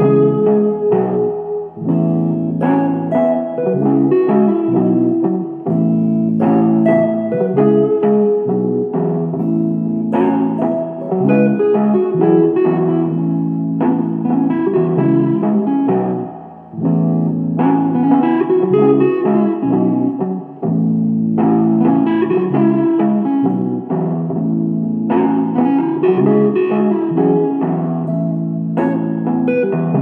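Instrumental blues-rock groove on live-looped electric guitar: a repeating rhythm loop with more guitar lines layered over it, the pattern coming round about every four seconds.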